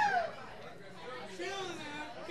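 A man's voice trails off over the PA at the start, followed by faint audience chatter in the room.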